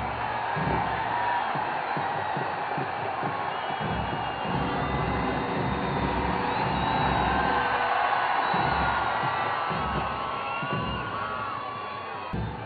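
Large crowd of spectators cheering and whooping, with music playing through it.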